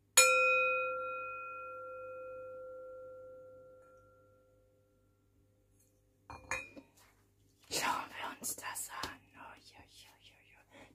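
Metal singing bowl struck once with a mallet, ringing in a clear tone that fades away over about four seconds. A brief clink comes a couple of seconds later, then a few seconds of rustling and light tapping.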